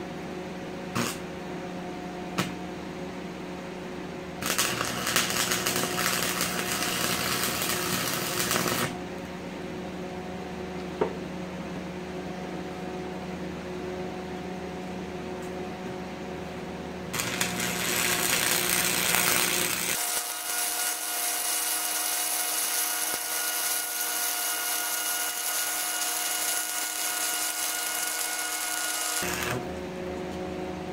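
Arc welding with a stick electrode on steel: two runs of crackling, hissing arc, one about four seconds long starting about four seconds in and a longer one of about twelve seconds from about seventeen seconds in. Beneath them is a steady hum, with a few sharp clicks between the runs.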